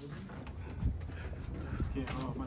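Footsteps on a concrete sidewalk, a few light knocks, over a low rumble on the microphone, with faint voices in the background.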